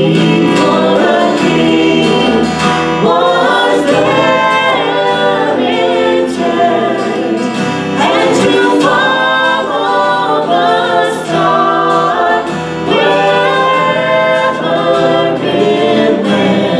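Live church worship music: singers at microphones carrying a sung melody over acoustic guitar and band accompaniment, running continuously.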